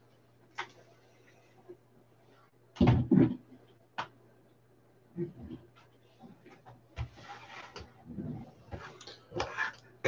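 Full-size football helmet being handled and set down, with two sharp knocks close together about three seconds in. Light clicks and rustles of handling come before and after.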